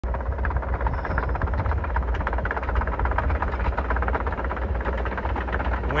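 Case crawler excavator travelling, its diesel engine giving a steady low rumble under a dense, rapid clatter of clicks from the moving tracks.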